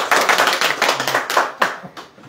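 A small group of people clapping together for about two seconds, dying away near the end.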